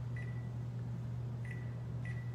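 Steady low hum from a running electric wall oven, with two faint short high-pitched beeps.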